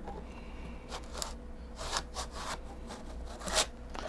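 A glass filter scraping against plastic as it is slid into the top slot of a 3D-printed matte box, in several short scrapes with the loudest near the end.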